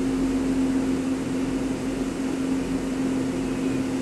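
A steady machine hum with one constant low-pitched tone over an even noise, without distinct knocks or clicks.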